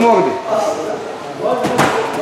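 A single thud, about three quarters of the way in, as a wrestler and a grappling dummy land together on a wrestling mat at the end of a throw, with a man's voice heard alongside.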